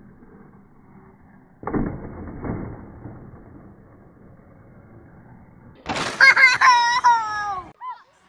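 A person laughing in a high-pitched, squealing voice for nearly two seconds near the end, the pitch sliding down as it finishes. A brief rush of noise comes about a second and a half in.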